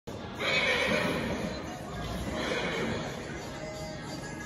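A horse whinnying about half a second in, a wavering call that fades over about a second, with a weaker call near the end, over background music in a large hall.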